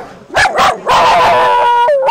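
Small black-and-tan dog barking: two short barks, then one long drawn-out howling bark lasting about a second.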